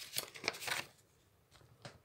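Faint rustling handling noise for under a second, then near silence with one faint click near the end.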